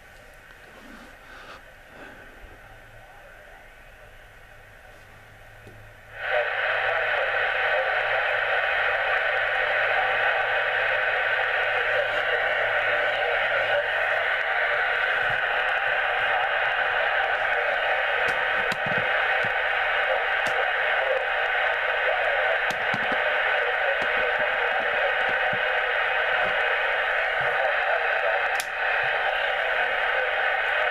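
Yaesu FT-857D HF transceiver receiving on 40-metre LSB through its speaker: faint at first with a low hum, then about six seconds in a loud, steady rush of band noise and static cuts in suddenly and holds. This is the receiver's noise floor while a switch-mode power supply runs nearby, checked for interference.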